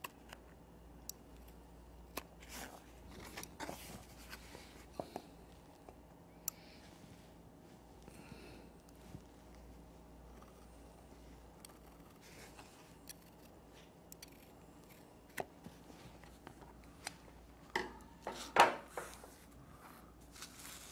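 Shears cutting the corners of a bag-stiffener template: scattered faint snips, with a few louder handling sounds near the end.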